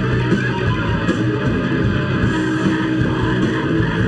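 A live hardcore punk band playing loud and steady, with electric guitar, bass guitar and a drum kit.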